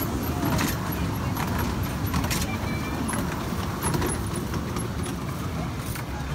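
Children's miniature amusement-park train running along its track: a steady low rumble with a few scattered clicks.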